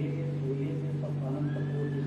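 A man's voice over a public-address system with a steady low hum underneath.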